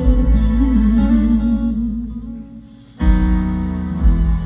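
Live gospel song: a singer's voice holds a wavering note over band accompaniment, fading away, then the band comes back in with a loud full chord about three seconds in.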